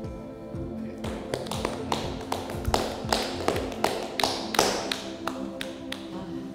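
Music with steady held notes. About a second in, a run of sharp, irregular taps joins it and stops just before the end.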